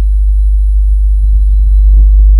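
A loud, steady low electrical hum, with faint thin steady whines higher up.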